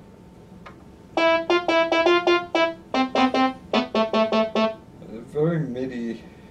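Digital MIDI keyboard playing a quick run of short notes on a synthesized voice patch, in two phrases of about a dozen notes with a brief break between them. A short wavering vocal sound follows near the end.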